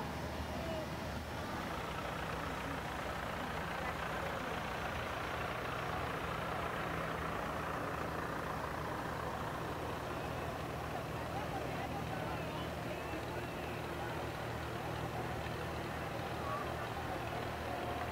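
Vintage farm tractors, Farmalls among them, running slowly in a line with a steady low engine hum, over the chatter of a crowd.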